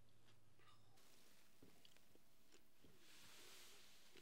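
Near silence: faint room tone with a few small, faint ticks.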